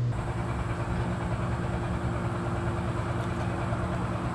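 A steady mechanical hum with an even hiss, unchanging throughout.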